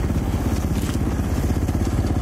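2017 KTM 450 XC-F's single-cylinder four-stroke engine running steadily under way on a dirt trail, an even, rapid train of firing pulses.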